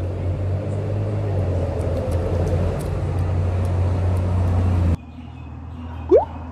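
A motor vehicle's engine running close by, a steady low hum that stops abruptly about five seconds in.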